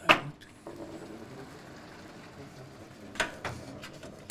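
Sliding lecture-hall blackboard panels being moved by hand and with a hooked pole: a sharp knock at the start, a steady rumble for about two seconds as a panel slides, then a couple of clacks near the end.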